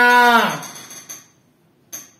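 A man's voice drawing out one long, level vowel in a chanting style of delivery, fading out about half a second in. A short click near the end.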